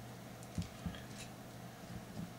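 Faint handling noise of fingers working fine nichrome wire and a small swivel against a peg on a wooden jig: two soft knocks a little over half a second in, with a few light ticks, over a steady low hum.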